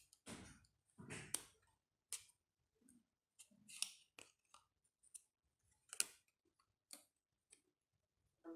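Faint handling noises: a string of separate sharp clicks and short rustles from a USB pen drive in its plastic blister packaging being picked up and handled, the loudest click about six seconds in.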